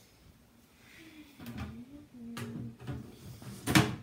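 Mesh screen lid of a glass reptile terrarium put down onto the tank, one sudden clatter near the end. A faint voice sounds before it.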